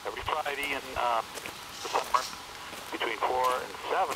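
A man's recorded voice message coming through a Uniden DECT 6.0 cordless handset's speakerphone. The speech is thin and lacks bass.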